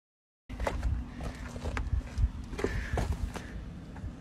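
Footsteps on gravel with wind rumbling on the microphone, after half a second of complete silence at the start.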